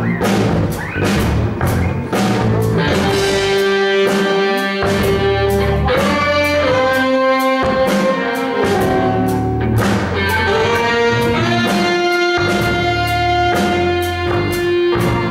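Live jazz band playing: saxophones hold long notes that change every second or two, over a drum kit, electric bass and electric guitars.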